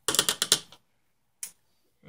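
A quick rattle of rapid clicks from small hard objects being handled, lasting under a second, then a single click near the end.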